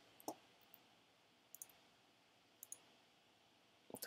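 Near silence with a few faint, short clicks: a slightly fuller knock just after the start, then small high-pitched clicks about a second and a half and two and a half seconds in, and another pair near the end.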